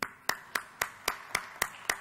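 One person clapping close to a podium microphone: a steady, even run of sharp claps, just under four a second.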